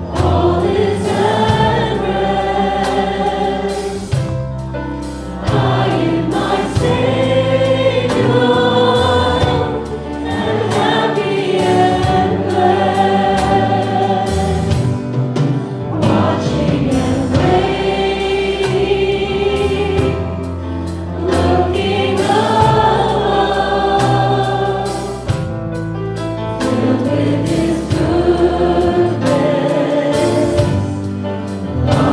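Congregation singing a worship song along with a live worship band, long held sung notes moving over a steady bass.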